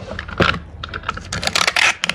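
Cardboard shipping box handled and pressed shut by hand, a run of light knocks and clicks, then a short rasp near the end as packing tape is pulled off a handheld tape dispenser roll.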